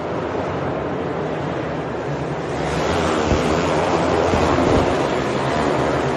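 A pack of outlaw dirt karts racing in an indoor arena, their engines blending into a loud, dense noisy wash. It swells louder from about halfway through as the karts come down the straight close by.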